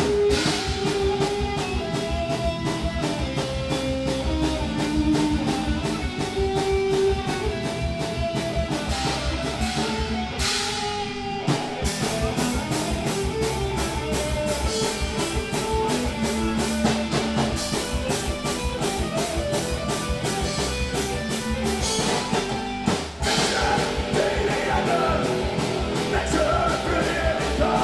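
Punk rock band playing live: distorted electric guitar, bass guitar and drum kit at full volume with a steady driving beat, broken by two short stops, about ten seconds in and again about twenty-three seconds in.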